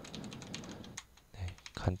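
Computer keyboard being typed on: a quick run of key clicks as a short word is entered, stopping after about a second.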